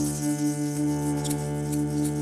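Striso digital keyboard instrument holding sustained electronic tones: a steady low drone under a pulsing middle note, with a higher note coming in about a second in. Light clicks and rattles from hand percussion sound over it.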